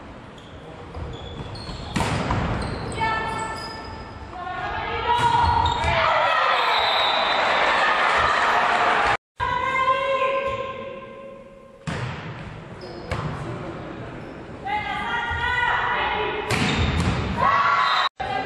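Volleyball rallies in a reverberant sports hall: a few sharp, echoing hits of the ball, with players and spectators shouting and cheering throughout, louder cheering before the middle. The sound cuts out briefly at an edit midway.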